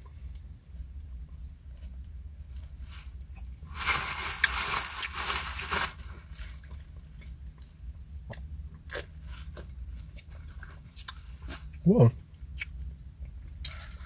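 Drink slurped through a wide straw for about two seconds, followed by scattered small clicks and wet mouth sounds of chewing popping boba (strawberry bursting bubbles). A steady low hum runs underneath, and a short exclaimed 'whoa' comes near the end.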